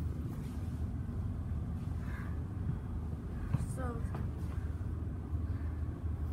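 Steady low rumble inside a Siemens electric suburban train carriage. Brief faint voices come through about two seconds in and again around the middle.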